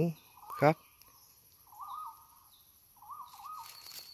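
A wild bird giving short warbling calls, once about two seconds in and again near the end, over a steady high-pitched insect buzz.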